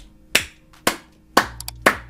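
Slow, even hand claps, about two a second, four in all.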